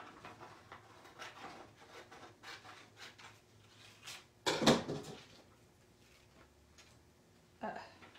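Scissors snipping through the clear plastic carrier sheet of holographic heat transfer vinyl in a run of quiet cuts. About halfway there is a louder clatter of handling on the work table, and one more sharp tap near the end.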